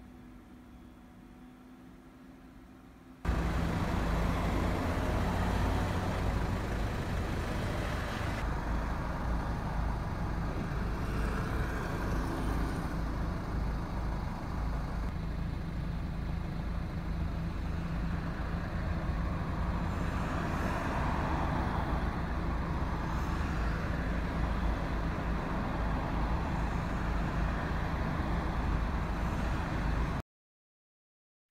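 Faint room tone with a thin hum, then about three seconds in a sudden cut to a steady, loud, low rumble of road vehicles and traffic that runs on without a break.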